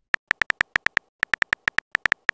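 Keyboard typing sound effect of a texting-story app: a quick run of short, high, clicky beeps, about seven a second, one per typed character, with a brief pause about a second in.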